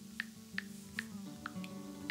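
Soft background acoustic-guitar music, with about five short clicks of typing on an iPad's on-screen keyboard as the letters of a name are tapped in.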